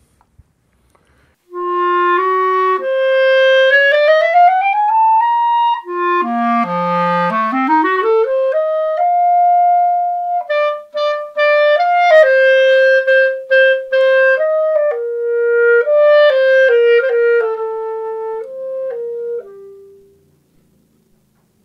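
Backun MoBa B-flat clarinet in cocobolo wood with gold keys, played solo and unaccompanied. It starts about a second and a half in with rising runs, then plunges to the low register and sweeps back up to a held note. Quick flourishing figures follow and settle downward to a final note.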